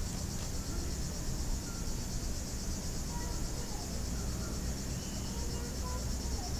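Crickets chirping steadily in a dense chorus, with a low rumble underneath.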